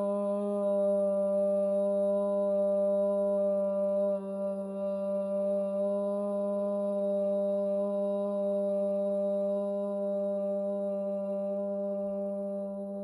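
A woman chanting one long, steady "Om" on a single low pitch: the open "O" vowel for about four seconds, then closing into a quieter hummed "mmm" held to the end.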